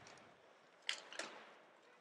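Faint steady background noise of the broadcast booth during a pause in commentary, with two brief faint sounds about a second in.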